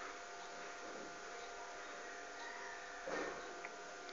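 Quiet room tone: a faint steady hiss with a low hum, and a brief soft noise about three seconds in.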